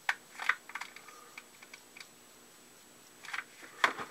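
Light clicks and taps of a hot glue gun and a wooden clothespin being handled on a plywood workbench. They come in a cluster near the start and another near the end, with faint ticks between.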